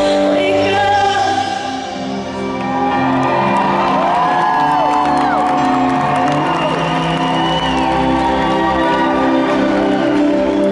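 Female lead singer and live rock band performing a ballad in an arena, heard from the audience through the hall's echo, with crowd whoops and screams rising over the music through the middle.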